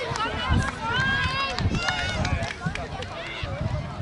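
Young boys shouting and cheering together, many high voices overlapping, celebrating a scored penalty in a shootout. A few low thumps sound under the voices early on.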